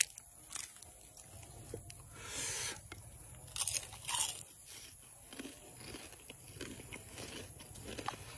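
A person biting and chewing something crisp, with scattered crunches; the louder crunches come about two, three and a half and four seconds in.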